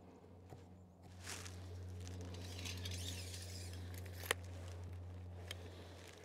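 Faint scratching of a wooden board being marked, with one sharp click a little after four seconds, over a steady low hum.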